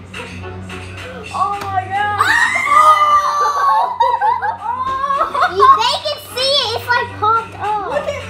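Children's high-pitched voices squealing and vocalising in a wordless sing-song, over a steady low hum.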